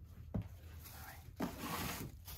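A dull knock about a third of a second in, then another thump and a stretch of rubbing and scraping near the end as plastic food containers are handled on a kitchen counter.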